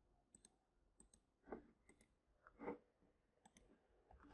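Faint computer mouse clicks, several in quick pairs, with two slightly louder, duller taps between them over near silence.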